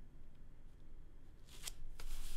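Ballpoint pen faintly scratching on drawing paper, then near the end a sharp click and a brief rush of paper noise.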